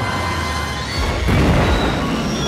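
Film soundtrack music from a movie clip, with a loud boom of an explosion sound effect breaking in about a second in.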